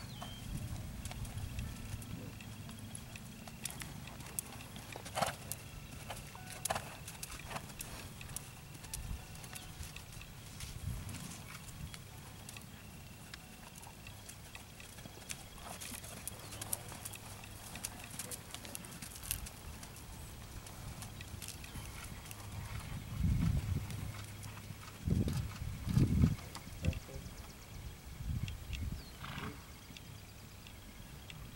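Horse's hooves trotting on sand arena footing, a muffled beat, with a cluster of louder low thumps near the end.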